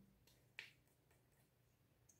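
Near silence broken by a single short click about half a second in: the cap of a liquid concealer tube being pulled open.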